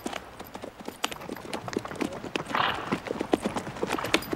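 Horses' hooves clip-clopping: many irregular hoofbeats, several a second, with a short breathy noise about two and a half seconds in.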